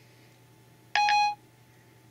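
iPhone 4S Siri chime: one short electronic tone about a second in. It marks Siri ending its listening after a spoken question. Otherwise faint room hum.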